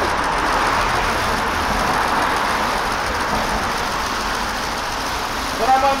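Steady outdoor din of road traffic and a crowd of people at a busy roadside, with a man's voice calling out near the end.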